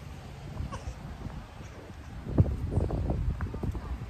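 Handling noise on a phone microphone while it is carried and moved: a low rumble and rubbing, then a knock about halfway through followed by a run of irregular knocks and rustles.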